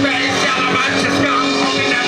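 Rap vocal shouted into a handheld microphone over a loud backing track, with a steady low note held underneath.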